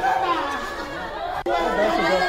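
Several people talking over one another, with a brief drop in the sound about one and a half seconds in.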